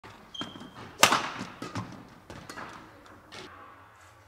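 Badminton play on an indoor court: a sharp crack of a racket striking the shuttlecock about a second in, the loudest sound, with several lighter knocks and footfalls of players moving on the court around it.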